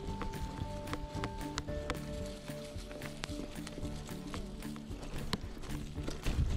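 Mountain bike clattering and rattling over a bumpy dirt trail, with many irregular sharp knocks and a steady low rumble from the tyres and wind. Music with long held notes plays over it.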